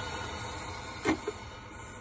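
Brewsly espresso machine running with its steam wand opened, giving a steady weak hiss. The steamer is faulty and lets out only a little steam. A short click about a second in.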